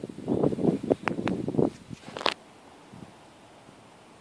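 Handling noise: rustling with a few light clicks for about two seconds, then quiet.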